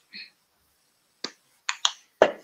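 Three sharp plastic clicks, about a second in and near the end, from a small plastic acrylic paint bottle being handled and set down on the work table.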